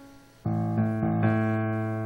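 A church keyboard comes in suddenly about half a second in with a loud held chord, which changes once or twice, introducing a gospel song.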